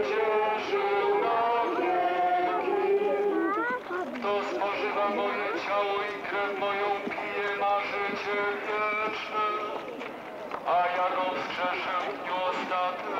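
Voices singing a slow religious hymn or chant, one melodic line with long held notes.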